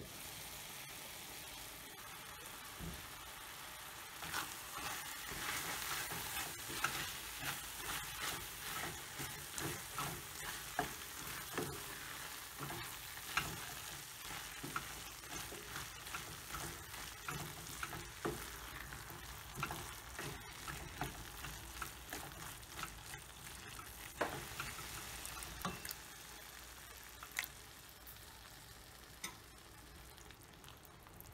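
Chickpeas and wilted spinach in a tomato-spice masala sizzling in a stainless steel pan while being stirred with a wooden spoon, the spoon scraping and knocking irregularly against the pan. The stirring starts a few seconds in and eases off near the end, leaving a softer sizzle.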